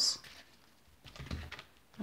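A deck of cards being shuffled by hand: a brief patch of faint clicks and rustle about a second in.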